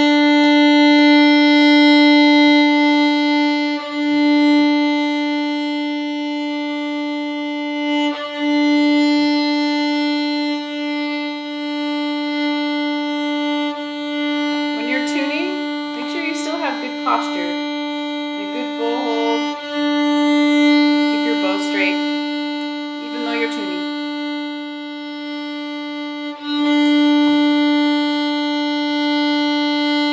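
Violin's open D string bowed in long, sustained strokes on one steady pitch, with a brief break at each bow change every four to six seconds. It is played as a reference pitch for tuning, with A set at 441.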